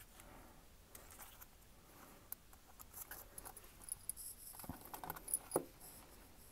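Faint, scattered small clicks and rustles of plastic parts being handled: the front suspension cradle and wheel of a 1:18 scale diecast model car turned in the fingers, with a few sharper clicks near the end.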